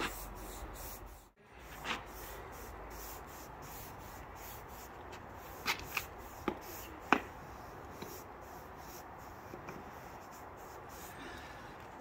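Hand brush swept lightly over freshly jointed mortar joints in engineering brickwork, a steady dry scratchy rubbing of repeated strokes, brushing the loose mortar crumbs off once the joints are dry enough. A few short sharp clicks come around the middle.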